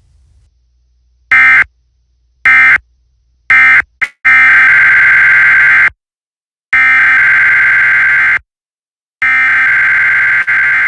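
Emergency Alert System SAME data bursts, a harsh digital warble: three short end-of-message bursts about a second apart, then three longer header bursts of about 1.7 s each, the coded header of the next alert being sent three times.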